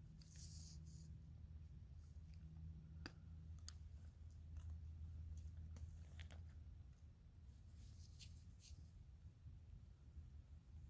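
Near silence: a low steady hum with a few faint clicks and two soft rustles, from a hand moving close to the microphone.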